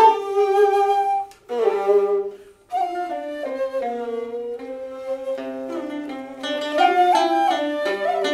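Chinese ensemble music: a xiao end-blown flute carries a slow melody over a plucked qinqin lute and a bowed yehu coconut-shell fiddle. The phrase breaks off briefly twice, about one and a half and two and a half seconds in, before the instruments carry on.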